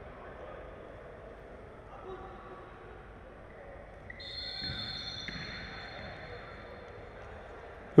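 Faint ambience of an indoor futsal match in a sports hall: distant players' voices and sounds of play on the wooden court. From about halfway, a faint, high, steady tone lasts a few seconds.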